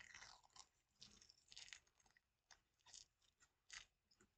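Faint, irregular crackling and sticky rustling from a peel-off charcoal face mask being pulled slowly off the skin of the chin, in a handful of short bursts with a sharper one near the end.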